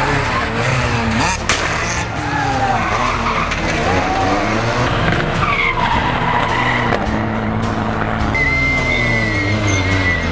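Rally car engines revving hard, rising and falling in pitch as the cars take tarmac corners at speed, with a high tyre squeal near the end.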